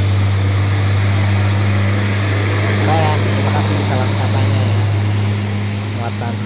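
Diesel engine of a heavily loaded Hino dump truck pulling uphill as it passes close by: a steady low drone over road noise, easing slightly near the end as the truck moves away.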